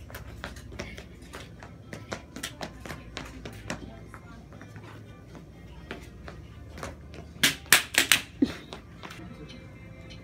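Irregular taps and knocks from a child dancing with a cane and stepping on a hard floor. About seven and a half seconds in, four or five much louder sharp hits come in quick succession.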